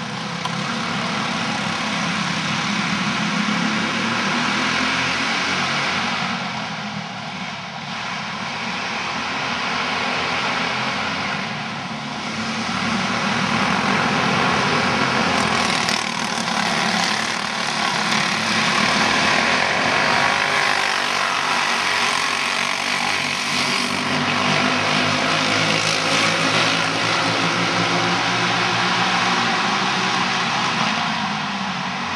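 Several racing kart engines running together in a dense, overlapping buzz. It eases briefly about seven and again about twelve seconds in, then swells louder and holds.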